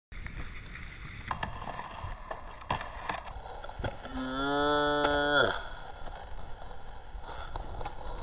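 A man's long drawn-out shout of "steeeeze", one held call lasting about a second and a half that drops in pitch at the end. Scattered knocks and a low hiss surround it.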